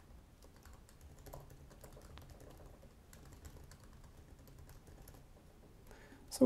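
Faint typing on a computer keyboard: a run of quick, irregular key clicks that thins out near the end.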